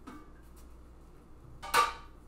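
A glass mason jar knocks against the metal canning pot with a single sharp clink near the end, after a quiet stretch.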